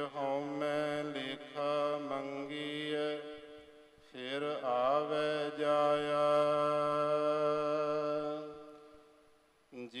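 Gurbani verses of the Hukamnama chanted by a single voice in a melodic, sing-song recitation. There are two long phrases with a short break about three seconds in, and the second phrase ends on long held notes.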